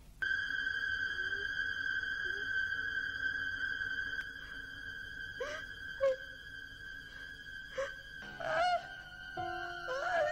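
Suspense film score: a high, piercing held tone strikes suddenly just after the start and sustains, with sharp stabs laid over it from about halfway through.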